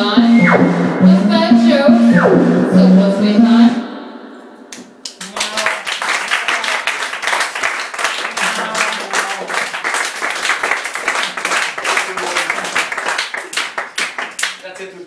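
Live electronic music with a pulsing low bass note and a synth tone sweeping down in pitch about every two seconds, cutting off about four seconds in. After a brief lull, an audience applauds.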